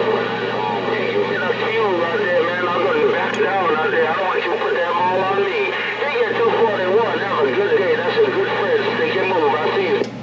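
Voices of other stations coming through a CB radio speaker on channel 6, several talking over one another, over a steady low hum.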